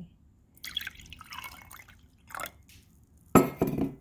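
Water poured into a glass tumbler holding a little lemon juice, making lemon water: an uneven splashing and trickling into the glass, then a loud, sharp knock about three and a half seconds in.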